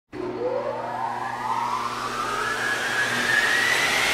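Mechanical sound effect: a whine rising steadily in pitch over a steady low hum and rushing noise, like an engine or turbo spooling up.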